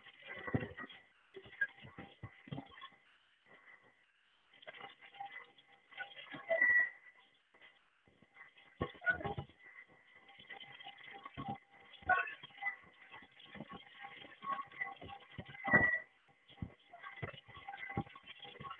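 Tri Tool 608SB clamshell lathe severing and beveling an 8-inch thin-wall tube: a steady high whine from the rotating head and drive, with irregular scraping and chatter of the tool bits in the cut and two sharp squeals, about 7 and 16 seconds in.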